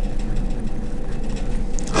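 A marker pen writing on paper, with faint short scratchy strokes, over a steady low hum.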